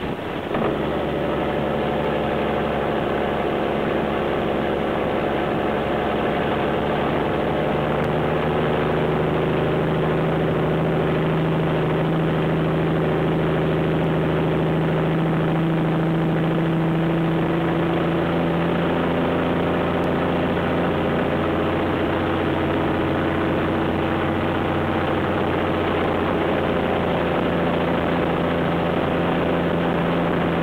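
Loaded Peterbilt log truck's diesel engine running through loud exhaust pipes on a steep downhill grade, a steady drone whose pitch shifts slightly a few times.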